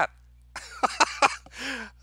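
A man laughing in a few short, breathy bursts, ending with a brief low voiced sound near the end.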